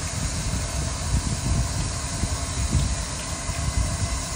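Wind rumbling unevenly on the microphone over a steady hiss.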